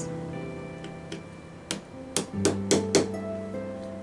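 Background music with a plucked guitar. About five sharp taps of a plastic hammer striking a pick into a plaster dig block in the second half.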